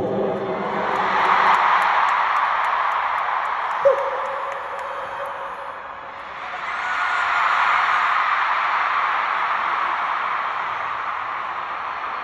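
Large arena crowd cheering and screaming. The noise fades about halfway through and then swells again.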